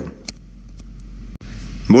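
A pause in a man's speech filled with the steady low hum and hiss of a voice-message recording, cut by a brief dropout about one and a half seconds in, where one Telegram voice message ends and the next starts playing; speech resumes at the very end.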